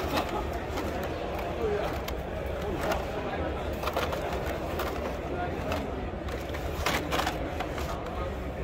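Carded Hot Wheels blister packs clicking and rustling as a hand sorts through them in a plastic crate, over steady background chatter. A few sharp clacks stand out, the loudest a cluster near the end.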